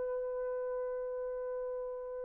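Selmer Super Action 80 Series II baritone saxophone holding a single high note steadily, almost pure in tone, after a sharply attacked low note.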